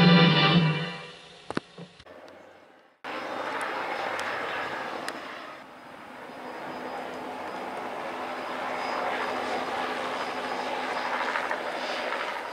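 Guitar music fades out over the first second. After a short silence, a Bell 206 JetRanger helicopter's turbine and two-blade rotor are heard steadily, easing off a little and then growing louder as it passes low overhead.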